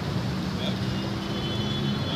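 Steady hum of road traffic with a low engine drone, with people's voices mixed in.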